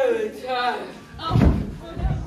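A person dropping onto a wooden stage floor: one heavy thud about a second and a half in, followed by a smaller knock, after a voice at the start.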